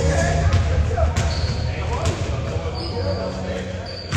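Basketballs bouncing on a hardwood gym floor, a few irregular thuds ringing out in the large hall, with indistinct voices in the background.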